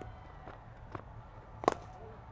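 A cricket bat striking the ball once: a single sharp knock near the end, after a couple of faint ticks.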